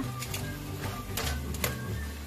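Metal tongs clicking against a nonstick frying pan as browned pieces of pork leg are turned, a handful of sharp, irregular clicks, the loudest near the end, over background music.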